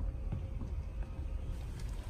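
Steady low rumble with a faint even hum from the battery-powered blower fan that keeps an inflatable sumo suit inflated, with a couple of faint knocks.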